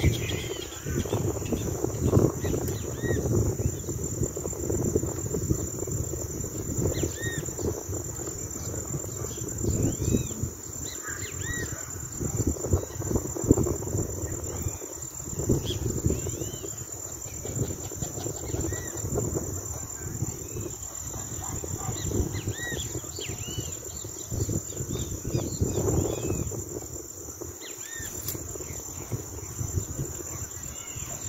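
Steady high-pitched chorus of insects, with scattered short bird chirps over an irregular low rumble.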